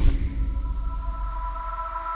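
Electronic logo sting: a low hit at the start, then a steady synthesized tone held under a hiss that slowly swells.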